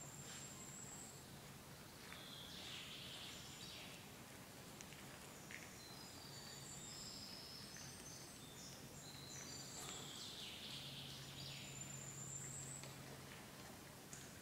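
Faint birdsong: thin high whistles and short chirps, with a rising whistle at the start and again near the end, over a low steady hum.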